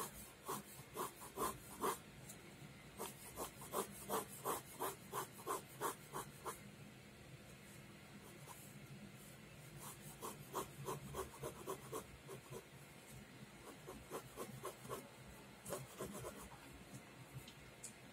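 Ballpoint pen sketching on paper: runs of quick, light strokes scratching back and forth, about three a second, with short pauses between the runs.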